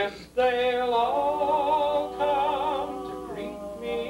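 Male barbershop quartet singing a cappella in close harmony: a quick swoop at the start, then a chord held with vibrato from about half a second in, sliding down to a new chord near the end.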